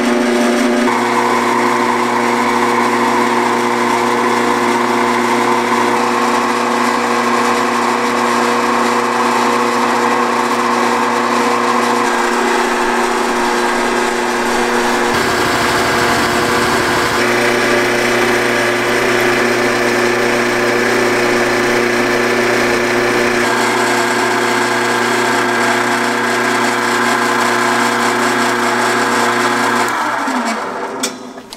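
Small benchtop metal lathe running steadily with a motor whine and hum while it drills and turns aluminium bar stock. There is a brief lower rumble about halfway through.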